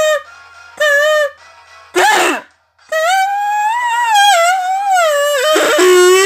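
Kazoo humming a melody: two short buzzy notes about a second apart, a brief rough burst, a short gap, then a long note that wavers up and down in pitch. Near the end comes another rough burst and a held note.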